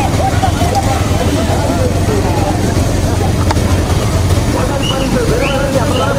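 Many motorcycle engines running together in a loud, steady low rumble, with men shouting and calling over them.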